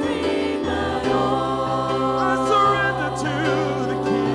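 Church worship team singing a slow gospel worship song, several amplified voices over keyboard and guitar, with held chords and a bass note that shifts about a second in.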